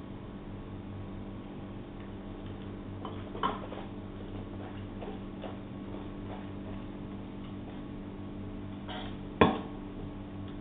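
A stainless steel wine-tasting spittoon bucket is set down on a wooden table with a sharp knock near the end. Earlier there is a softer knock and a few faint ticks as the wine glass and bucket are handled, over a steady low hum.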